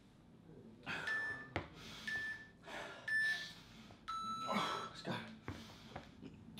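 Interval timer on a phone beeping a countdown: three short beeps about a second apart, then a longer, lower beep about four seconds in that signals the start of the 40-second work interval. Heavy breathing from exercise between the beeps.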